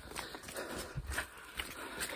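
A runner's footfalls on a trail, faint and regular at a running pace.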